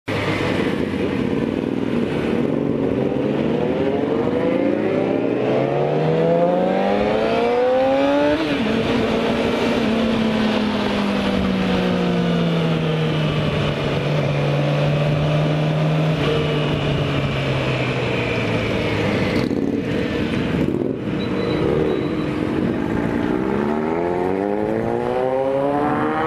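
Motorcycle engine under way, climbing in pitch as it accelerates, dropping suddenly at an upshift about eight seconds in, then falling slowly as it eases off. It climbs again near the end. Steady wind rush runs throughout.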